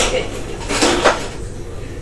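Clatter of a toy foosball game in play: the small ball and hard playing pieces knock together a few times in the first second, then quieten.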